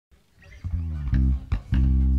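Electric bass guitar playing a few low plucked notes, the last one held.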